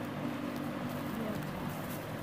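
Shop background of faint, indistinct voices, with the rustle of shirts and their plastic wrapping being handled.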